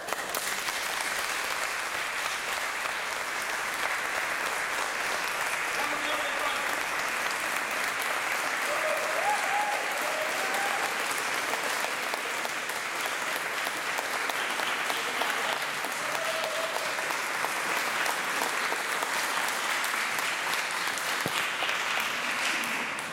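Audience applauding steadily in a reverberant church, starting abruptly as the music ends. A few voices are faintly heard through the clapping around the middle.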